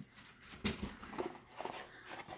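Faint handling noises: a few soft taps and rustles from the paper packaging of a door stop being handled.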